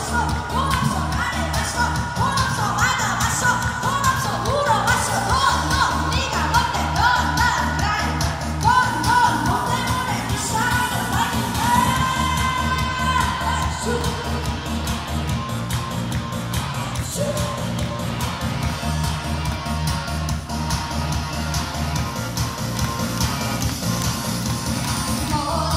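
A woman singing live into a microphone over a loud backing track with a steady bass beat, amplified through PA speakers. Her voice drops out about halfway through, leaving the backing track playing on its own.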